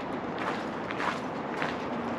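Footsteps of a person walking on a gravel lane, a few soft steps over a steady outdoor background hiss.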